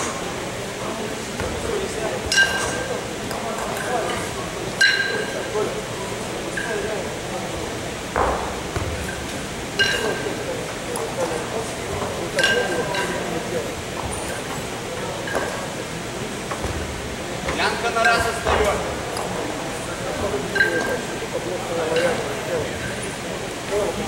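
Pairs of steel competition kettlebells clinking against each other with a short metallic ring, about every two to three seconds, as two lifters do long-cycle reps. A duller knock comes about eight seconds in, with a cluster of clinks near eighteen seconds, over a steady murmur of voices in a large hall.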